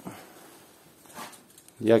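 Mostly faint handling noise, then a man's voice starting to speak just before the end.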